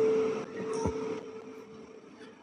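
A steady ringing tone from the lecture's microphone and loudspeaker system, fading away within about a second, then quiet room tone with a single soft knock.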